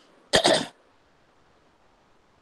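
A single short cough.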